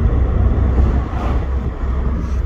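Steady low rumble of a moving car heard from inside the cabin: engine and tyre road noise.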